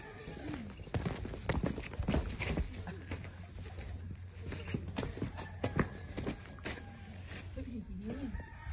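Irregular footsteps and scuffs on dry, gravelly dirt: a person walking, with a young goat kid stepping about alongside.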